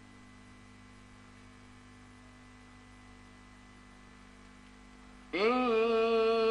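A faint, steady electrical hum with hiss from an old television recording fills a pause in Quran recitation. About five seconds in, a man's voice starts the next phrase of the recitation, sliding up onto a long held note.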